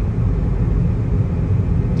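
A car driving at road speed, heard from inside the cabin: a steady low rumble of road and engine noise.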